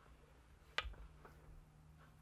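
Near quiet with a faint steady hum, broken by a single light click about a second in from hands working a wooden rigid heddle loom.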